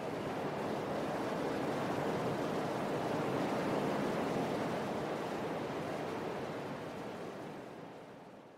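A steady wash of noise like surf, left over after a pop track's music stops. It swells gently, then fades away near the end.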